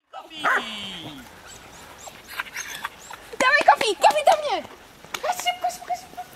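Dogs barking and yelping in short, high calls that fall in pitch, with people's voices mixed in. The sound starts suddenly, and the barking is loudest around the middle.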